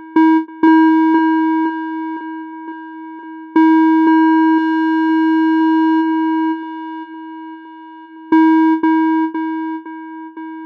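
Electronic music: a single held synthesizer pitch re-struck with a click about twice a second. It comes in louder about half a second, three and a half and eight seconds in, and fades between these.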